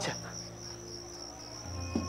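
Crickets chirring steadily in the background, with low held notes of background music beneath that change near the end.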